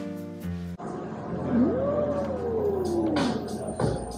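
Background guitar music cuts off about a second in, leaving restaurant room noise. Then comes one long hummed 'mmm' of enjoyment from a diner chewing sushi, its pitch rising and then sliding slowly down. A light knock comes just before the end.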